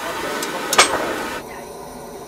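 Portable propane on-demand water heater running with the hot tap open: a steady rush of burner and flowing water, with two sharp clicks under a second in. The rush stops abruptly about a second and a half in.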